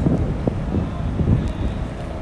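Wind buffeting the microphone: an uneven low rumble that rises and falls.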